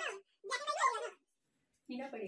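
A young woman's high, whiny wordless cries, two short ones with bending pitch, the second about half a second in.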